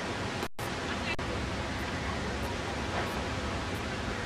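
Steady outdoor noise on the camera microphone, with a very brief dropout to silence about half a second in.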